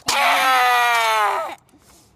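A boy's loud, drawn-out yell, held for about a second and a half with its pitch slowly sinking, then cut off.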